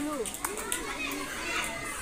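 A large group of schoolchildren chattering at once, with many young voices overlapping.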